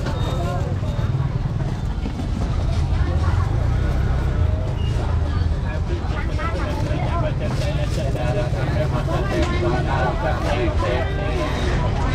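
Busy street-market ambience: several people talking over one another, over a steady low rumble of traffic.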